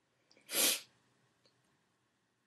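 One short, sharp burst of breath from a person, about half a second in, with faint small clicks around it.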